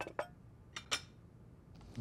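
Saucepan and spatula handling on a gas hob: four short, light clinks and knocks in two pairs, from the pan being set on the burner grate and the spatula touching the pan.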